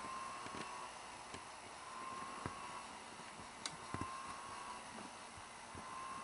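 Sony SL-5000 Betamax VCR's capstan motor pulsing. A faint tone swells and fades about every two seconds over a low mechanical hiss, with a few light ticks. The capstan servo is not locking in, so the motor keeps hunting.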